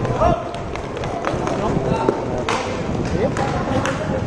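Players' voices calling out across an outdoor inline hockey rink, with a few sharp clicks and knocks of sticks, ball or puck and skates on the plastic court tiles.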